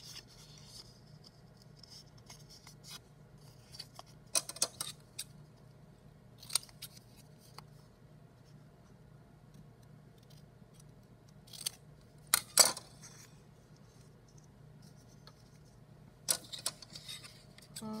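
Scissors snipping through coloured paper in short, scattered cuts, a few snips at a time. The snips come in bursts several seconds apart, the loudest about twelve seconds in, with quiet between.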